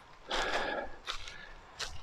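Footsteps on dry fallen leaves and ivy: one louder crunch about a third of a second in, then fainter rustling and a small click near the end.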